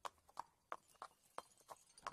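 A horse's hooves on stone paving at a walk: quiet, sharp, evenly spaced clip-clops, about three a second.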